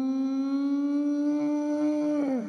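A person's voice holding one long hummed note, its pitch creeping slightly upward.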